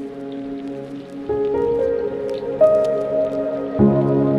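Outro music: soft sustained synth notes that build up one after another, with light high plinks scattered over them.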